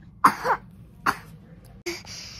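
A person coughing and clearing their throat: short bursts about a quarter second in and again about a second in.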